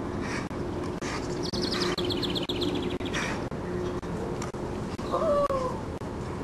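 A bird's rapid, evenly repeated trill for about a second and a half, followed near the end by a short whine that falls in pitch, over faint rhythmic huffing.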